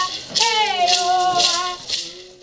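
A woman singing a ritual chant while shaking gourd maracas in a steady beat of about two shakes a second, fading out near the end.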